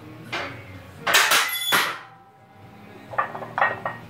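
Iron weight plates clanking and ringing against the barbell sleeves as a loaded bar moves during a back squat. There is a loud cluster of metallic clanks about a second in, then a quicker, lighter rattle near the end.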